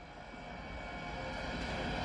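The opening swell of a pop song's intro: a hissing drone with faint held tones underneath, growing steadily louder.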